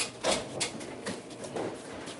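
Soft rustling and a few light clicks as hands in plastic gloves roll dough into a log on a wooden bench. The clicks come in the first half second, then softer rustling follows.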